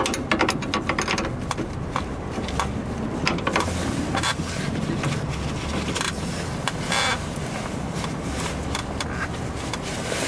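Irregular metallic clicks and scrapes of a hand tool working on a rear brake hose retaining clip and its steel bracket, densest near the start and again in the middle. A steady low rumble runs beneath.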